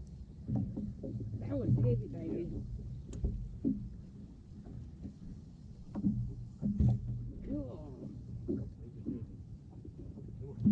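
Indistinct, muffled talking in short snatches over a steady low rumble, with a sharp knock about three seconds in and another near seven seconds.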